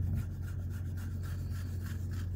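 A hand rubbing and scratching a head of hair close to the microphone: a run of short, irregular scratchy strokes over a steady low hum.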